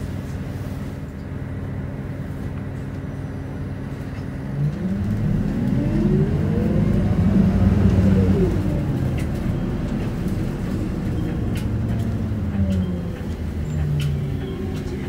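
Isuzu Erga city bus's diesel engine heard from inside the cabin: running steadily at low revs, then about five seconds in it pulls away, the engine note climbing for about three seconds before dropping back and settling as the bus drives on.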